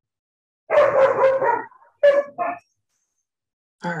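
A dog barking over a video-call line: a quick run of barks lasting about a second, then two short barks.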